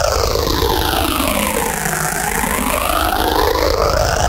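Heavily distorted, effects-processed logo sound: a loud, noisy roar with a heavy low hum. A sweeping filter pulls its tone down until about halfway, then back up again.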